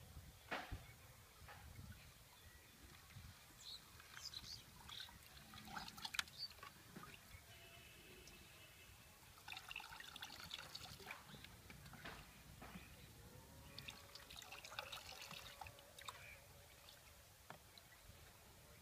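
Faint trickle of liquid poured from a plastic mug through a funnel into a plastic bottle, coming in short spells, with small clicks and knocks of handling between.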